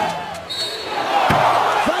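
A referee's whistle blows briefly, a shrill high tone about half a second in, calling a foul. Then the arena crowd cheers loudly as the basket counts.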